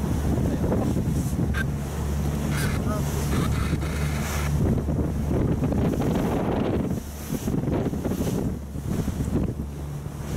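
Motorboat engine running steadily under heavy wind buffeting on the microphone and the wash of waves, the wind easing a little about seven seconds in.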